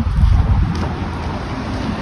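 Low, steady rumble of wind buffeting a handheld phone's microphone outdoors.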